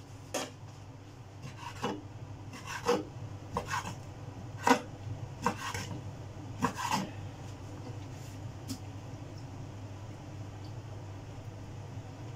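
Chef's knife cutting squid on a wooden cutting board: about nine sharp, irregular strikes of the blade on the board in the first seven seconds, then only faint ones, over a steady low hum.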